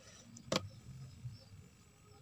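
A single sharp click about half a second in, over a faint low hum.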